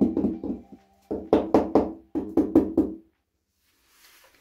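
Rubber mallet tapping ceramic floor tiles down into their adhesive bed: rapid sharp knocks, about four or five a second, in three quick runs with short pauses between, stopping about three seconds in.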